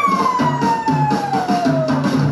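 Live rock band music: a steady drum and bass beat under one long high note that slides smoothly down in pitch over about two seconds.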